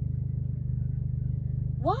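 Steady low rumble of engine and road noise inside a moving car's cabin.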